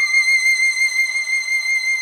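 Sampled solo violin from the CineStrings Solo library holding one high legato note with a gentle vibrato.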